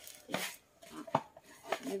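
Handling noise as a mesh-wrapped foam disc is pressed and turned by hand: three short knocks, the sharpest a little past the middle.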